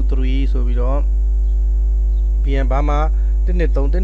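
Steady low electrical mains hum in the recording, with a man's voice speaking briefly at the start and again in the second half.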